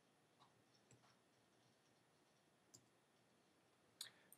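Near silence: faint room tone with a few soft clicks, about three in all, the last a little before the end.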